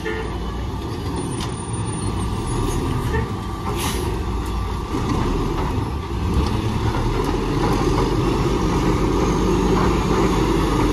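Natural-gas Mack LE garbage truck's engine running as the truck pulls slowly closer, growing gradually louder.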